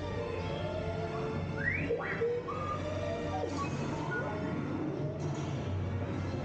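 Dark-ride soundtrack: music with sci-fi sound effects over a steady low hum, with two quick rising whistle-like sweeps about two seconds in.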